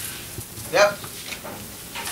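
Steady background hiss, with one short spoken word or syllable a little under a second in.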